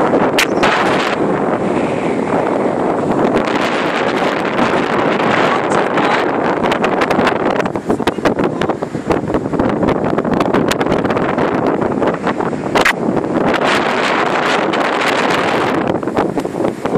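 Strong wind buffeting a phone's microphone: a loud, steady rushing with many small crackles.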